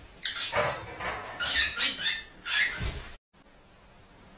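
Several short, sharp animal calls in quick succession, in three groups, cut off abruptly about three seconds in, followed by faint background noise.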